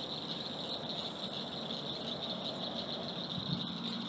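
A steady, high-pitched chirring over faint hiss: a background insect chorus.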